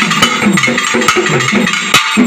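Two pairs of pambai drums, the Tamil folk double drums, played together in a fast, dense rhythm of stick and hand strokes. Low drum tones slide up and down in pitch under the sharp strokes, with an especially loud stroke near the end.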